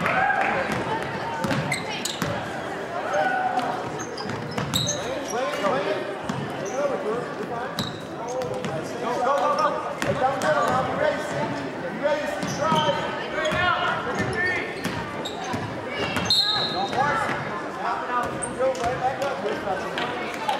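Basketball dribbled on a hardwood gym floor, with spectators' voices and shouts ringing through a large gymnasium and a few short high squeaks.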